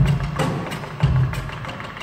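Live percussion trio of drum kit and taiko drums: deep drum strokes at the start and again about a second in, with sharp wooden stick clicks in between.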